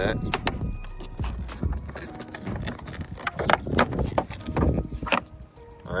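Plastic pry tool clicking and knocking against a Toyota Camry side-mirror housing as the mirror glass is levered off its clips: a scattered series of sharp clicks and taps.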